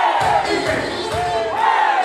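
Crowd shouting together over loud dance music, with two big shouts, one right at the start and another about one and a half seconds in, while the bass beat briefly drops out.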